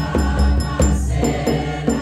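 A large choir of many voices singing a gospel hymn together, led on microphones, over a steady, pulsing deep beat.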